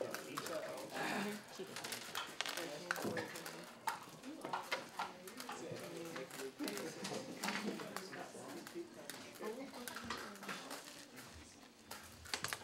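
Quiet classroom chatter: several students talking low among themselves, with scattered small clicks and taps.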